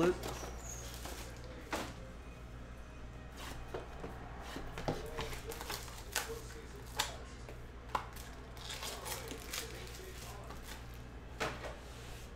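Trading-card pack and box being handled and opened by hand: scattered light rustles and taps of wrapper and cardboard, roughly one every second or two, over a steady low hum.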